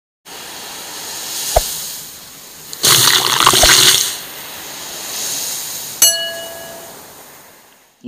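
Surf washing on a beach, with a louder surge of surf about three seconds in. A sharp click comes early, and a short bell-like ding rings out at about six seconds and fades, the click-and-ding of a subscribe-button animation.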